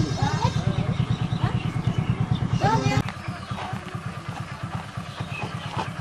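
A small engine idling with a rapid, even beat, with voices talking over it; the sound becomes quieter about three seconds in.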